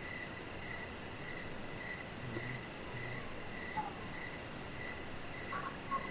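Faint high-pitched chirping, a single note repeating about twice a second, like a cricket or similar insect.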